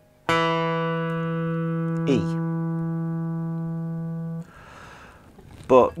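A three-string electric cigar box guitar in open E tuning has one open string plucked, sounding a single E that rings steadily for about four seconds before it is damped. A short spoken word falls over the note about two seconds in.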